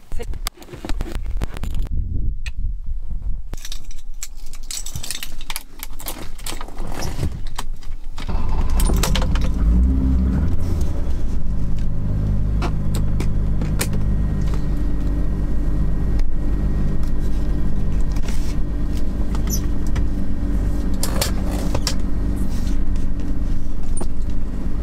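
Scattered clicks and knocks, then from about eight seconds in the BMW 525e's straight-six engine runs steadily as the car is driven, heard from inside the cabin, with a brief rise in pitch near ten seconds.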